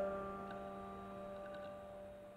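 Solo piano's closing chord ringing and slowly dying away at the end of a piece, with a few faint clicks about half a second and a second and a half in.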